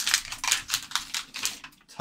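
Pokémon trading cards and their packaging being handled on a tabletop: a quick run of light, irregular clicks and rustles that thins out near the end.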